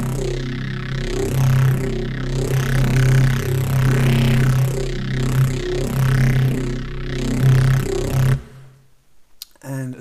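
Neuro bass synth patch holding one low note while its upper tone keeps sweeping and shifting in vowel-like arches, driven through saturator, chorus and Camel Crusher distortion as its linked macros are modulated. It cuts off suddenly about eight seconds in.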